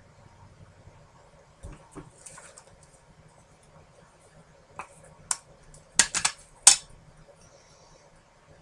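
Sharp little plastic clicks and taps as a clear acrylic stamp block and a VersaFine ink pad are handled on a tabletop. They come singly at first, then in a tighter cluster about six to seven seconds in as the ink pad's plastic lid is opened.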